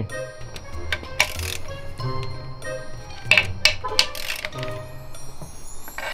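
Light, tinkly background music with held notes, broken by a few sharp clicks about a second in and again a little past the middle.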